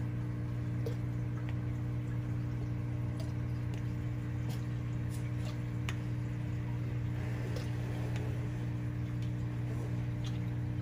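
Steady hum of an aquarium pump running, with a few faint, scattered drips and small splashes of liquid as a dose of MelaFix is poured into the tank water.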